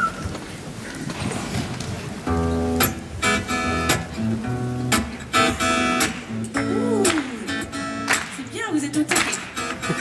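Steel-string acoustic guitar strumming the opening chords of a song, coming in about two seconds in after a moment of room noise, in a steady rhythm of repeated chords.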